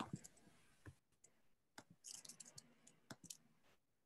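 Near silence with faint, irregular clicks from someone working at a computer, including a quick run of them about two seconds in.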